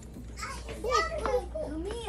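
A young child's high-pitched voice, vocalizing or talking in short gliding sounds with no clear words.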